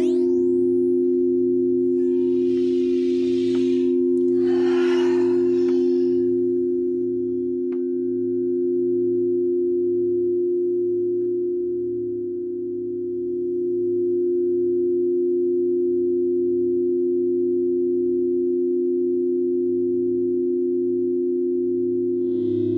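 Crystal singing bowls played with a mallet on the rim, sounding two steady overlapping tones, one low and one a little higher, that swell and ease slightly. Two soft breathy rushing sounds come within the first six seconds.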